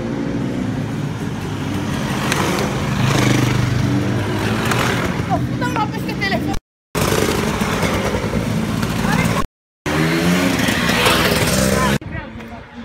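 Enduro motorcycles riding past close by, engines revving, with children's voices shouting over them. The sound cuts out completely twice for a moment.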